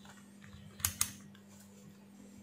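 Two sharp clicks close together about a second in as the digital multimeter is handled on the bench, over a faint steady hum.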